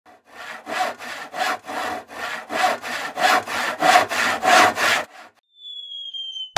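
Rhythmic back-and-forth sawing, about two strokes a second, stopping about five seconds in. Near the end comes a high whistle that falls slightly in pitch.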